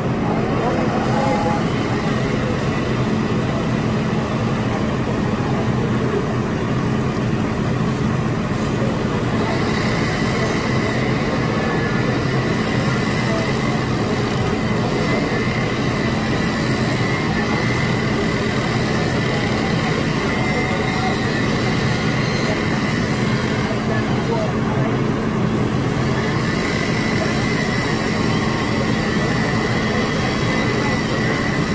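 Fire engine's diesel engine running steadily at the fire scene, a continuous low drone, with a steady higher whine joining about ten seconds in.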